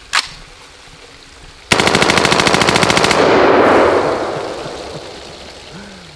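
M16A1 rifle (5.56 mm) firing one single shot, then, about a second and a half later, a fully automatic burst of about a second and a half at a rapid, even rate. The burst's echo and the spray of water jetting from the bullet holes in the steel drum die away after it.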